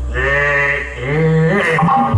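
A man's long, drawn-out cry with bending pitch, followed by a second, shorter cry that rises in pitch: the puppeteer voicing a puppet's cry as it is struck down in a fight. A steady low hum underneath drops out near the end.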